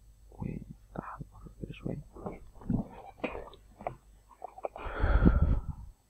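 A man's voice muttering and whispering to himself, the words not made out, in short broken bursts. About five seconds in, a louder rush of breath-like noise with a low rumble hits the microphone.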